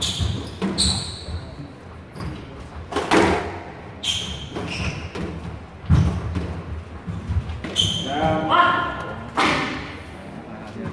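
A squash rally: the ball smacked by rackets and thudding off the court walls at irregular intervals, with sharp squeaks of court shoes on the wooden floor, echoing in a large hall. A voice calls out near the end.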